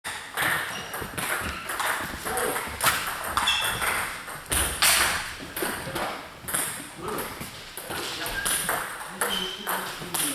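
Table tennis balls clicking against tables and bats, many irregular hits overlapping from several tables at once, with voices in the background.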